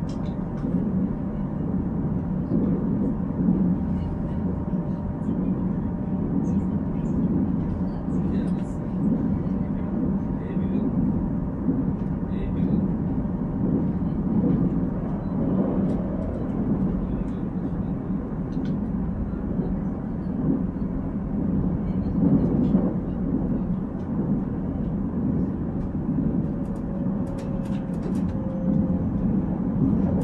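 Cabin noise inside a Korail Nuriro passenger train car under way: a steady low rumble with faint scattered rattles and a thin steady hum. Near the end a tone falls slowly in pitch.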